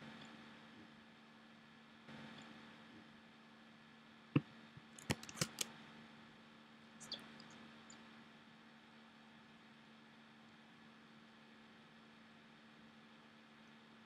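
Quiet room tone with a steady low hum, broken by a few sharp clicks of a computer mouse: one about four seconds in, a quick cluster of three or four just after, and a softer one near seven seconds.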